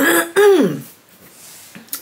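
A woman clearing her throat: a short rough burst, then a voiced sound that falls in pitch, over within the first second.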